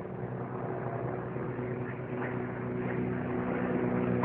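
Military aircraft circling overhead during a bombardment: a steady engine drone that grows slowly louder.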